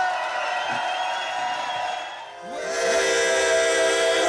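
Crowd cheering over a held music chord, fading out about two seconds in. Electronic outro music with a steady synth chord starts just after.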